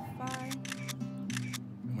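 Several camera-shutter clicks from phones taking pictures, over background music with a steady bass line.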